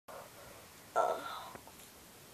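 A person's short whispered vocal sound about a second in, over faint room noise.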